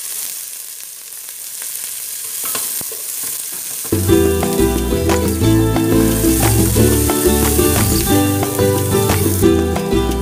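Diced onion sizzling in hot cooking oil in an aluminium pot, stirred with a wooden spoon. About four seconds in, background music with a steady beat comes in and becomes the loudest sound, with the sizzling still beneath it.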